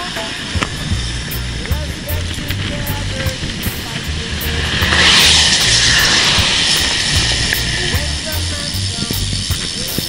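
Wind buffeting the microphone of a camera riding on a moving road bike, a steady low rumble, with a rushing hiss that swells about five seconds in and slowly fades.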